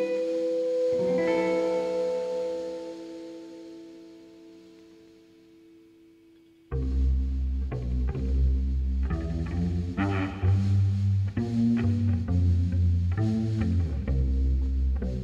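Live psychedelic rock band: a held chord rings and fades away over the first few seconds, then the full band with electric guitars, bass guitar and drums comes in suddenly about halfway through and plays on.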